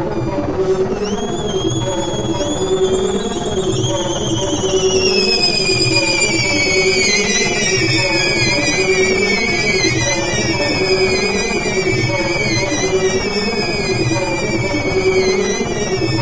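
Improvised electronic music: a low pulsing synthesizer pattern under a high, wavering squeal that starts about a second in and slowly slides down in pitch, made by air squeezed through a rubber balloon held at the microphone.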